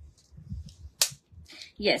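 Soft handling of a retractable tape measure and cotton fabric, with one sharp click about a second in.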